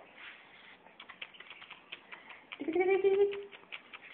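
An infant's short vocal sound, held on one steady pitch for under a second about three seconds in, with faint irregular clicks before and around it.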